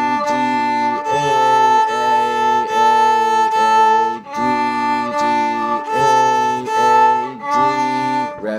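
Viola bowed in short, evenly repeated notes, about two a second, in a slow beginner exercise. There is a brief break about four seconds in, where the bow is lifted and reset.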